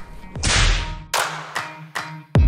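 An edited whoosh sound effect, then a sharp, whip-like crack a little over a second in.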